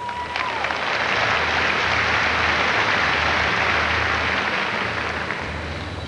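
Large arena crowd applauding: a steady wash of clapping that builds over the first second and eases off slightly toward the end.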